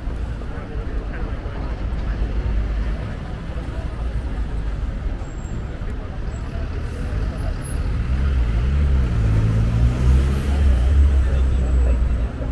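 City street traffic with people talking nearby. A heavy vehicle's engine grows louder about eight seconds in, its pitch rising and falling for a few seconds.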